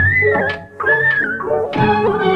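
Music from an old Hindi film song: the accompaniment thins and two high, held, clean notes sound, one after the other with a brief dip between them, before the full band comes back in near the end.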